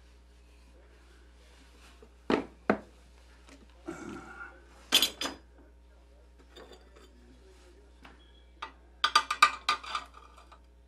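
Metal hardware and tools clinking and knocking on a workbench as parts are handled: a few separate sharp clinks, then a quick run of rapid clicks near the end.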